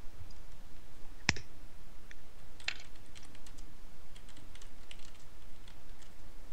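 Typing on a computer keyboard: one louder click about a second in, then a quick run of keystrokes through the second half.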